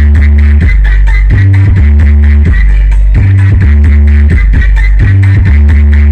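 Very loud electronic dance music played through a truck-mounted stack of big loudspeaker cabinets, with a heavy bass line repeating in a short pattern and a steady beat.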